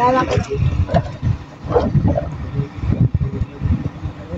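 Wind rumbling unevenly on the phone's microphone. A woman's voice trails off at the start and comes in briefly again about two seconds in.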